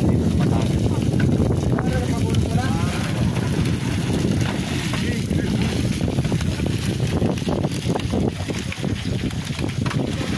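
Wind buffeting the microphone, a heavy uneven low rumble, with people talking in the background.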